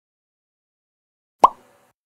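A single short pop sound effect, a quick pitched blip, about a second and a half in.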